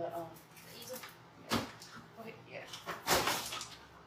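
Two short bumps from a deco mesh wreath being handled and set down, about one and a half seconds apart, the second one longer, under brief speech.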